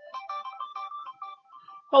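Phone ringtone: a short electronic melody of quick stepped notes, playing quietly.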